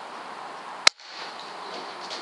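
A single sharp crack of a Weihrauch HW100 pre-charged pneumatic air rifle firing about a second in, the shot that drops a pigeon from its nest. The background hiss cuts out for a moment right after the shot.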